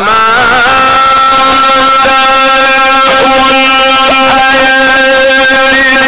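A man's voice singing one long held note of Egyptian religious chant (inshad), amplified through a microphone, with short wavering melodic turns near the start and again about three seconds in.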